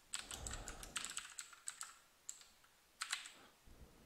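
Typing on a computer keyboard: a quick run of keystrokes over about the first two seconds, then a short burst of clicks about three seconds in.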